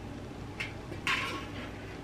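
Light handling of a corrugated metal raised garden bed panel: a small click, then a short scraping rustle about a second in.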